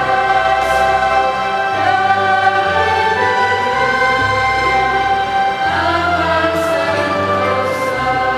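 Choir singing a slow sung psalm in long held notes over a steady low accompaniment.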